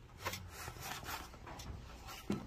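Faint, intermittent rubbing and scraping noises, several short scratches spread through the two seconds.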